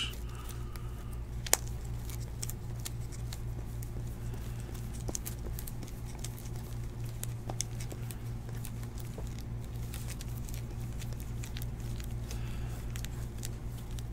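A stack of Topps Heritage baseball cards being thumbed through by hand: light, irregular card-on-card flicks and clicks, one sharper click about a second and a half in. Under it runs a steady low hum.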